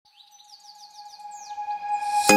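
Bird chirps in a quick series of short falling calls over a steady held tone that fades in from near silence, the opening of a music track.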